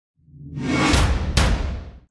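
Logo-intro whoosh sound effect: a swelling rush with a deep low rumble, two sharp hits about a second and a second and a half in, then fading away.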